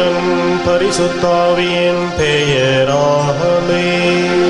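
Church music: a voice singing a hymn line that glides between notes over sustained keyboard chords.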